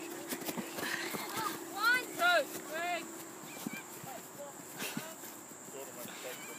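Boys' high-pitched shouts, three short calls close together about two seconds in, over the scattered thud of feet landing on grass as they hop up a hill.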